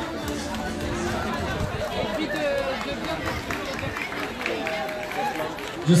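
Overlapping chatter of several people talking at once in the background, with no single clear speaker.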